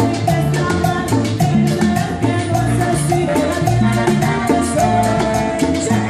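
Live band music: a woman singing into a microphone over upright bass, keyboard, drum kit and bongos, with a steady, even percussion beat.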